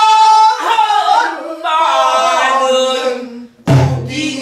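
Several voices singing pansori together in unison, with long held and bending notes. Near the end the singing breaks off briefly and a single loud stroke on a buk barrel drum lands, leaving a low ring.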